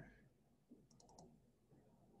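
Near silence: room tone, with a quick run of four or five faint clicks about a second in.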